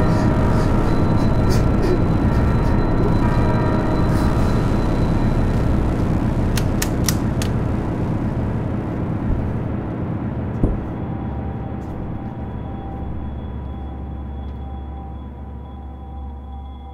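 A dense, rumbling wash of noise with a few steady tones inside it, the low ambient drone of a film soundtrack, fading steadily away. A few sharp clicks come about seven seconds in.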